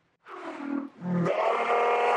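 A man's wordless vocal reaction: a short falling sound, then a long, drawn-out held groan starting a little past halfway.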